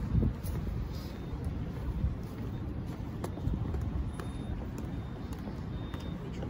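Steady low rumble of outdoor city background noise with a few faint clicks.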